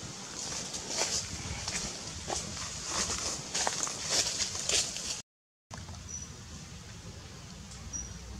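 A run of irregular soft clicks and rustles from macaques handling and grooming in a tree. It breaks off in a short dead dropout about five seconds in, after which only faint outdoor background remains, with a couple of brief high chirps.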